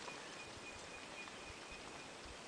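Faint outdoor ambience with a thin, high, steady tone that fades out after about a second and a half.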